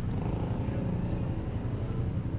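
Steady low rumble of roadside traffic noise, with no distinct events.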